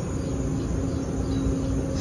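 Steady low mechanical hum with a constant mid-pitched tone from running machinery.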